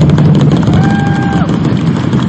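A large bedug drum is struck repeatedly at a ceremonial launch, under loud, continuous crowd clapping and cheering. A single held call briefly rises over the din in the middle.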